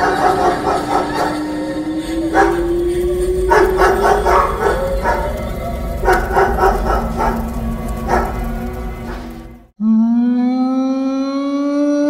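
Horror-film background music with a tone that rises slowly, breaking off suddenly near the ten-second mark. A single long canine howl then begins, rising at its onset and then held.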